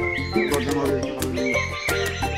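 Background music with a steady beat, held melodic notes over a bass line.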